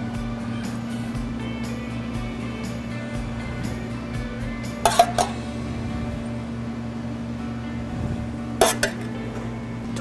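Background music with a steady low tone throughout, and a metal spoon clinking against a small stainless steel pan twice, at about halfway and near the end, as pesto is spooned out.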